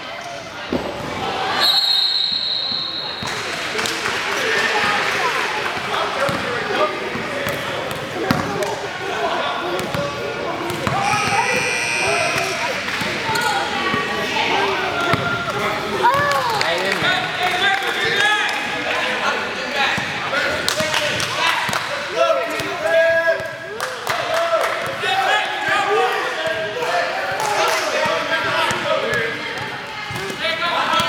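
A basketball bouncing on a hardwood gym court amid the voices and calls of players and onlookers, in a large echoing hall. About two seconds in, a steady high whistle blast lasts over a second.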